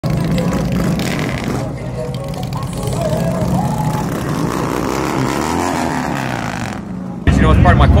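A motorcycle engine running steadily under music and voices. About seven seconds in, it gives way abruptly to a man talking close to the microphone.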